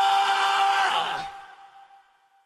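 Isolated male rock lead vocal with no band behind it, holding one long note at a steady pitch that fades out about a second and a half in, leaving a short reverb tail.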